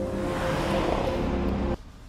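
Intro jingle: sustained music tones with a car sound effect swelling over them in the middle, both cutting off suddenly near the end.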